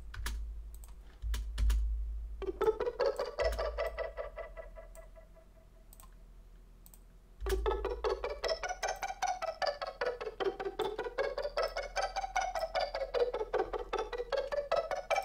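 Synth arpeggio from a Native Instruments Massive patch: a fast, even run of repeated notes stepping up and down a G minor scale in eighth notes. It starts a couple of seconds in, fades out, and starts again about halfway through.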